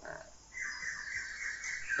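A man's short filler 'à', then a faint, drawn-out breathy rasp from his voice or breath that grows slowly louder for about a second and a half before he speaks again.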